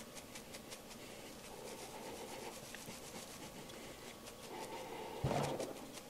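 Faint rustling and scraping of a sheet of 1/8-inch hardware cloth loaded with wet dead honeybees, shaken and rubbed over a towel, with one short bump a little after five seconds.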